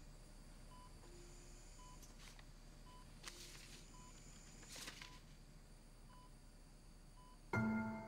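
Hospital bedside patient monitor beeping steadily, about one short beep a second, with paper rustling a few times as sheets are unfolded. Soft melodic music comes in near the end and is the loudest sound.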